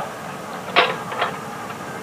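Continental A65 aircraft engine being hand-propped and not catching: a short sharp sound as the propeller is swung through, about three-quarters of a second in, and a fainter one about half a second later.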